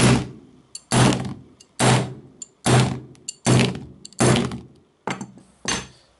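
A large steel adjustable wrench hitting a Sony Ericsson Xperia Active smartphone lying on a tabletop: about eight heavy blows, a little under a second apart, each a dull thud.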